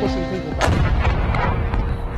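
A rocket exploding nearby: one sharp blast about half a second in, followed by about a second of heavy rumbling noise.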